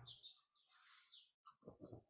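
Near silence: room tone with a few faint, short high-pitched chirps.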